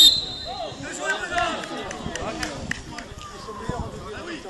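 Several voices of players and spectators calling out and talking across an open football pitch, overlapping and at some distance, with a few scattered short thuds.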